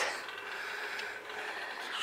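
Sheep chewing feed close by: faint, irregular crunching and clicking.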